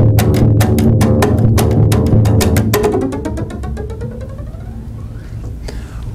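Contrabass (double bass) played rhythmically: a quick run of sharp percussive strokes on the instrument over a sustained low note, which about three seconds in gives way to a ringing sound that slowly dies away.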